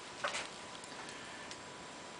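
Light clicks and taps of handling right next to the microphone: a short cluster just after the start, then two faint ticks, over a faint steady room hum.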